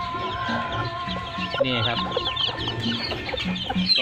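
A Thai native hen clucking in short low notes while her chicks peep constantly in quick, high chirps.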